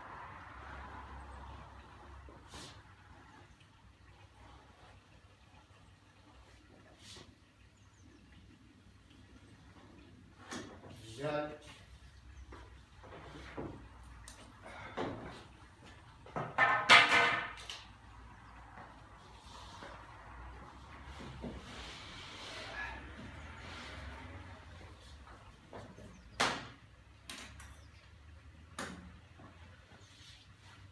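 A Stanley knife scoring along a pencil line across a sheet of plasterboard, a faint scraping at the start, then the board being handled with scattered short knocks. About halfway through comes a loud, brief pitched sound that stands out as the loudest thing.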